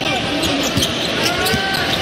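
Basketball being dribbled on a hardwood court, a few short sharp bounces, over steady arena background noise.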